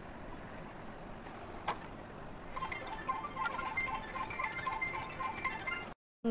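Faint tinkling chime-like tones, many short notes at a few different pitches, starting about two and a half seconds in and running until just before the end. A single sharp click comes shortly before.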